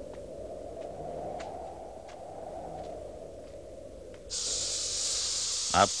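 A snake hissing: a steady high hiss that starts suddenly about four seconds in and holds. Before it there is a low steady rushing sound with a few faint footfalls.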